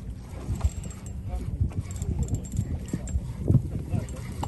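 Irregular low rumbling and knocking of wind and water around a small boat at sea, strongest about half a second in and again near the end, with faint voices.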